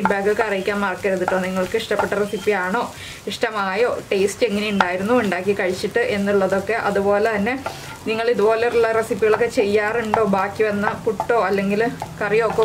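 Wooden spatula stirring and scraping crumbled puttu and egg around a nonstick frying pan while it fries, in repeated strokes with a couple of brief pauses.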